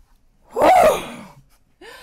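A woman's loud, breathy "whew!" exclamation about half a second in, falling in pitch as it trails off.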